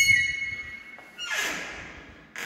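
A wood-framed sauna door being opened: a sharp click with a short high ringing at the start, then a swish about a second and a half in.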